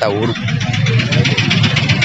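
Roadside traffic noise, with a motor vehicle engine running close by and a steady low rumble.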